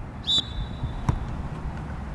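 A short, high whistle blast with a faint ringing tail, then a sharp knock about a second in and a weaker one near the end, as a soccer ball is kicked, over a low rumble of wind on the microphone.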